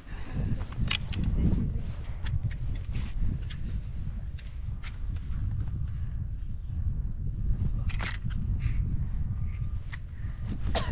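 Ski boots crunching and stamping in deep snow on an uphill climb on foot, with irregular sharp crunches over a steady low rumble of wind on the microphone.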